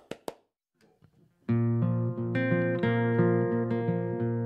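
A last few hand claps, a moment of near silence, then about a second and a half in a guitar starts strumming ringing chords, with bass under it, opening the song's instrumental intro.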